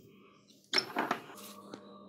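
Sudden clicks and a metallic scrape about two-thirds of a second in, then fainter scraping: a diecast toy car base shifting in a bench vise while it is being worked on.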